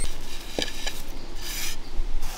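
Fingers scraping dry roasted grated coconut off a clay plate and dropping it onto a flat stone grinding slab: a soft dry rustle with a few light clicks.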